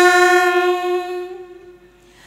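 Two women singing unaccompanied Vietnamese quan họ folk song, holding the end of a phrase on one long, steady note in unison. The note fades away about a second and a half in, leaving a short pause.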